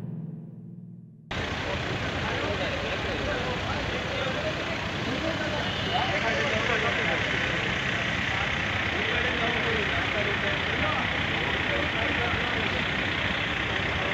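Music fades out, then about a second in it cuts to steady roadside noise: vehicle engines idling in a traffic jam, with people's voices in the background.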